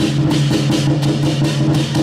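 Lion dance percussion: a big drum and clashing cymbals beat a fast, steady rhythm of about four strokes a second over a ringing low tone.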